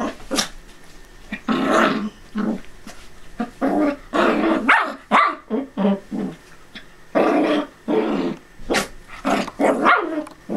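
Small dogs at play, a miniature dachshund puppy and a miniature poodle, barking and growling in quick irregular bursts, with a sharp bark near the end.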